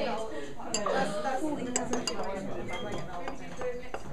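A few scattered light clinks of glass on glass: a thermometer knocking against the test tube and beaker as it stirs chocolate in a water bath.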